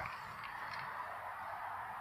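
Faint, steady background noise with no distinct event: an outdoor ambient hush.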